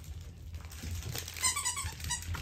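Squeaky dog toy squeaked in a quick run of short, high squeaks during the second half.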